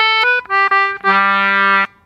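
English concertina playing the answering phrase of a simple jig in G major: a run of short quick notes, then one long held note that stops abruptly just before the end.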